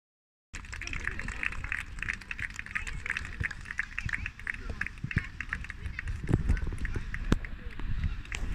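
A group of children shouting and cheering together in many quick bursts, with wind rumbling on the microphone and a couple of sharp knocks late on.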